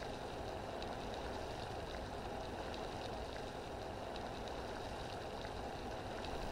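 A steady, low background noise with no distinct events, like room tone or an ambient drone.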